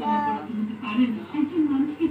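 Voices talking, with a short high-pitched vocal call at the start.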